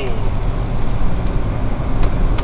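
Steady low rumble of engine and tyre road noise inside a moving car's cabin.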